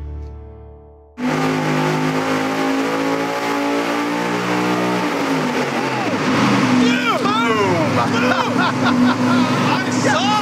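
A music sting dies away, then about a second in the supercharged 555-cubic-inch big-block Chevy V8 cuts in, running loud and steady on the engine dyno. In the second half, men's shouting voices rise over the engine.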